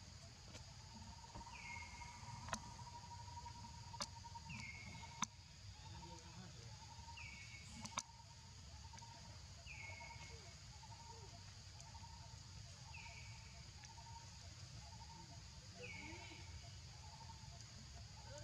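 Faint forest ambience: insects droning steadily, with a short falling call repeated about every three seconds. A few sharp clicks come in the first half.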